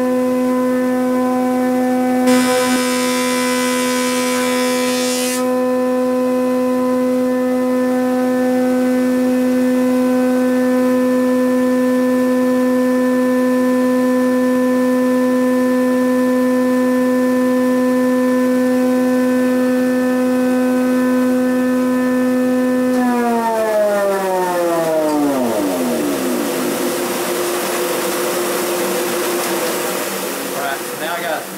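Powermatic 15-inch thickness planer running with a steady whine, with a rougher cutting noise for about three seconds starting about two seconds in as a plastic-fibre board passes through. Near the end a motor is switched off and winds down, its whine falling steeply in pitch, while a steadier hum and hiss carry on.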